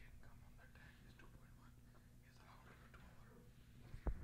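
Near silence: a faint steady low hum with faint voices in the background.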